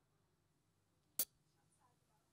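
Near silence broken by a single sharp key click about a second in.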